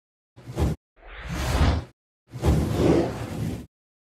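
Three whoosh sound effects from a logo intro: a short one, then one that swells up over about a second, then a longer one that cuts off shortly before the end.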